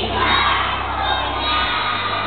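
A large group of children shouting and cheering together, many voices at once.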